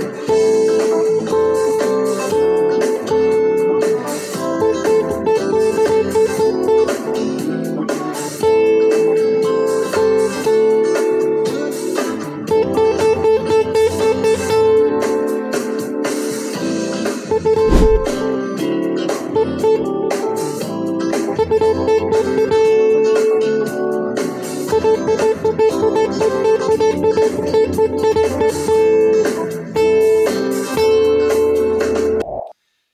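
Electric guitar soloing on a single repeated high note over a blues-style backing track. It alternates long held notes with stretches of fast repeated picking of the same note, and quieter passages with loud ones.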